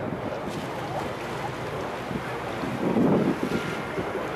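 River boat under way: a steady low engine hum under water wash, with wind buffeting the microphone and a louder gust about three seconds in.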